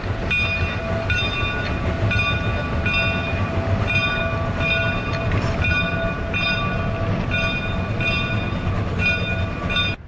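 Steam locomotive bell ringing steadily, about one stroke every two-thirds of a second, over the low rumble of the locomotive and its train moving off.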